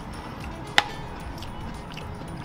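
A single sharp clink of tableware, like a metal spoon or dish knocked against another, a little under a second in, over steady restaurant background noise with faint music.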